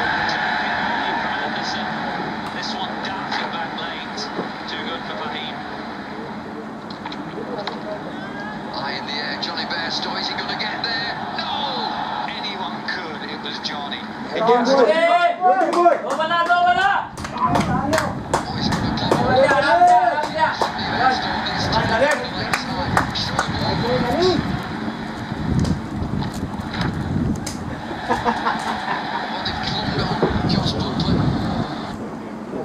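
Shouts and calls from people at a cricket ground, loudest and most excited from about halfway through for several seconds, over a steady outdoor background with scattered sharp clicks.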